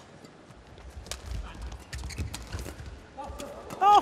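Badminton doubles rally: rackets striking the shuttlecock in sharp cracks, mixed with players' footfalls thudding on the court mat. Near the end an excited voice breaks in and is the loudest sound.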